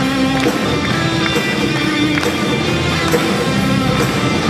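Live band music: acoustic guitar strummed together with a keyboard, playing a steady song.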